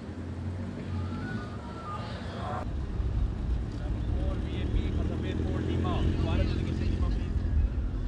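Low engine rumble of motorcade vehicles, with voices murmuring. About two and a half seconds in, the sound cuts, and a louder, steady low engine rumble follows, including a police motorcycle escort.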